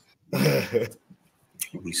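A man clearing his throat once: a short, rough burst lasting about half a second.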